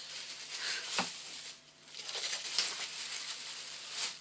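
Clear plastic bag crinkling and rustling as rubber stamps are slipped back into it, with a sharp tap about a second in and a brief lull midway.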